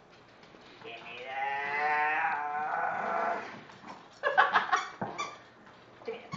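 A small dog giving one long drawn-out moaning vocalisation, about two and a half seconds, wavering and sagging slightly in pitch. About four seconds in comes a quick run of short, louder sharp sounds.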